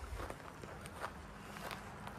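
Footsteps of a person walking over grass and bare ground: a few soft, irregular steps.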